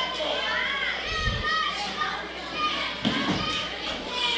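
Children in a crowd shouting and calling out with high, wavering voices, heard through the room, with two low thumps about a second in and near the end.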